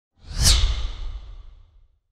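Whoosh sound effect for an animated logo intro: a swell that peaks about half a second in over a deep rumble, then fades away over the next second.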